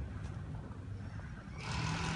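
Outdoor street background: a low, steady rumble with faint hiss, the hiss swelling near the end.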